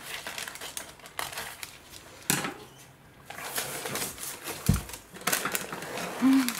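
Scissors snipping through a sheet of paper, with the paper rustling and crinkling as it is handled: a run of irregular clicks and crackles. A single dull thump comes a little before the end.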